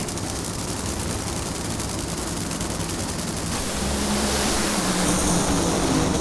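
Two supercharged nitromethane Funny Car V8 engines running at the starting line, a dense rumble with steady low tones. They grow louder from about halfway through as the cars stage and launch.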